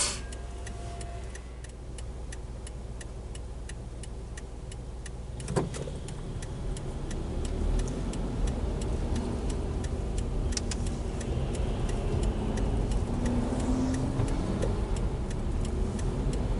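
Inside the cabin of a Toyota Isis 2.0, the turn-signal indicator ticks steadily, a few ticks a second, while the car idles. About six seconds in, engine and road noise rise as the car pulls away and turns.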